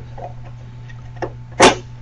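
A Softing WireXpert 4500 cable certifier's permanent-link adapter being lined up and pushed onto the unit: a faint click a little past one second, then a short, louder clack near the end as it snaps into place.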